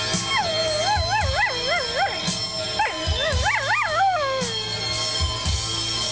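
Border Collie howling along to rock music: two long howls, each wavering up and down in pitch several times, over a guitar-and-drum track.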